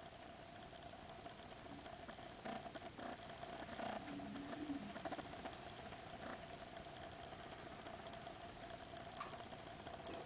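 Quiet room with a faint steady hum, and a few soft clicks and knocks as a chalice is handled and drunk from.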